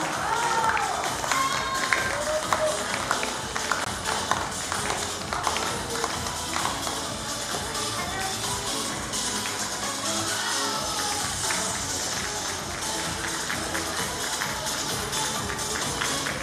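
Music playing for a runway walk, with the audience clapping.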